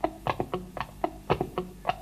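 Live rock band in a free-form improvised passage: sparse, irregular clicking and tapping percussion, about five sharp taps a second, over a faint low sustained drone.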